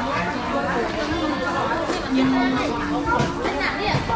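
Market chatter: several people talking over one another among the stalls, with one voice briefly holding a steady call a little past two seconds in.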